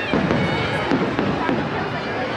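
Aerial fireworks bursting, with a sharp crack about a second in, over the chatter of a large crowd.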